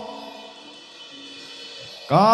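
A lull in live Javanese gamelan accompaniment: the loud chanted phrase dies away at the start and faint steady instrument tones ring on, with a soft drum stroke near the end.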